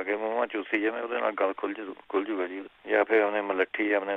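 Speech only: a person talking in Punjabi, with short pauses between phrases.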